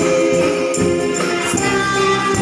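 A woman singing a slow Japanese enka song through a microphone and PA, holding long notes over amplified instrumental accompaniment with light percussion.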